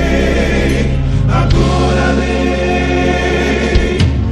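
Gospel song backing track playing, transposed down two and a half tones, with sustained chords and a choir of backing voices over a steady bass.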